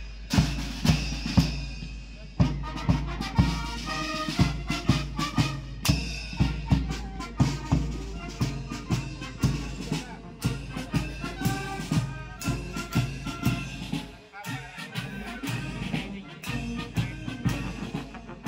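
Police brass band playing a march on the move: trumpets and other brass over a steady marching beat of bass drum and snare, with a brief dip in the music about fourteen seconds in.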